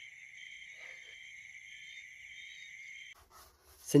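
Steady, high-pitched chorus of night insects such as crickets, which cuts off suddenly a little past three seconds in.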